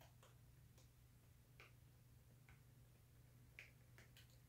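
Near silence: room tone with a steady low hum and a handful of faint, irregular clicks.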